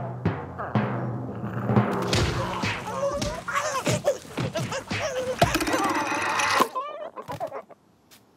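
Cartoon score with timpani rolls, giving way to a cartoon dust-cloud brawl: a dense, loud jumble of thumps, whacks and squawking voices that cuts off suddenly near the end.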